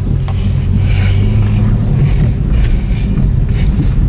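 Honda Civic engine running steadily while driving, heard from inside the cabin as a low drone through a makeshift open intake: a pipe and cone air filter poking up through the hood. A light jingling rattle runs over it.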